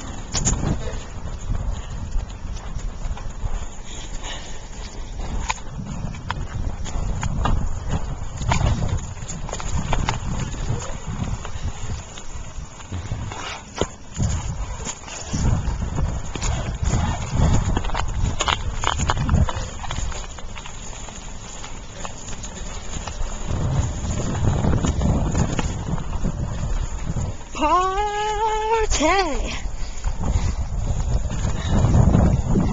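Wind buffeting the microphone with the rattle and knocking of a Stingray bicycle being ridden along a road. A voice calls out briefly near the end.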